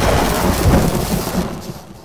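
Logo-reveal sound effect: a deep rumble under a dense hiss, like thunder and rain, that gradually fades out near the end.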